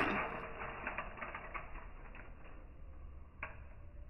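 Stainless steel pan of water at the boil with a bundle of dry spaghetti just dropped in. The bubbling hiss fades over the first couple of seconds, with faint light ticks as the stiff strands shift and settle, and one sharper click near the end.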